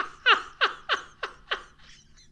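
A person laughing hard in a string of short 'ha' pulses, about three a second, each dropping in pitch, the laugh fading and dying out near the end.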